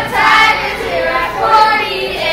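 Children singing together.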